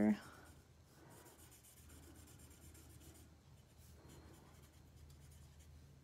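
Faint scratching of a Stampin' Blends alcohol marker's fine tip colouring on cardstock, in short strokes.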